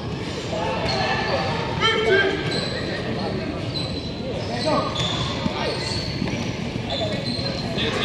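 Players and spectators calling out and chatting, echoing in a large indoor sports hall, with repeated thuds and short high chirps scattered through.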